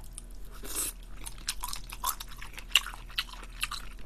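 Close-miked chewing of a mouthful of cream-sauce (carbonara) tteokbokki, with many small wet mouth clicks scattered throughout.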